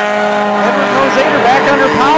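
Front-wheel-drive stock cars running at speed on a short oval, a steady engine drone, with a voice over it from about half a second in.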